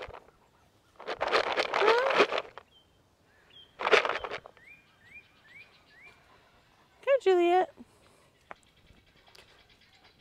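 Footsteps rustling and crunching through dry leaf litter in two bursts. A bird chirps four short rising notes in between, and a brief voice-like hum comes near the end.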